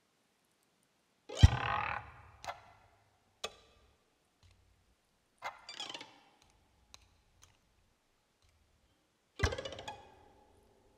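Contemporary music for harp and live electronics: a few sudden plucked or struck attacks, each ringing out briefly, with silences between them. The loudest comes about a second and a half in, and another strong one near the end.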